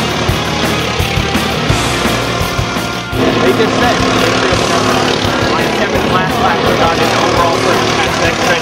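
Rock music with a steady drum beat. About three seconds in, a go-kart engine running at speed joins it and carries on under the music.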